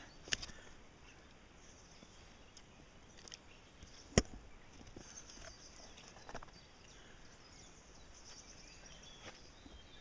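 Quiet outdoor ambience with faint rustles and a few small clicks of handling close to the microphone, one sharp click about four seconds in.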